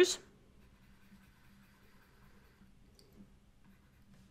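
Mostly near silence, room tone only, with one soft click about three seconds in. A spoken word trails off at the very start.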